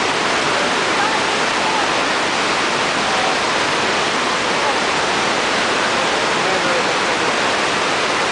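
The Rhine Falls: a huge volume of white water crashing over rocks close by, a loud, unbroken rushing that holds steady throughout.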